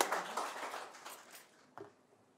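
Applause from a small audience dying away over the first second and a half, followed by one short knock near the end.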